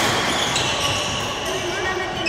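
Badminton racket striking the shuttlecock, one sharp smack at the start and a lighter hit about half a second later, with sports shoes squeaking on the court floor.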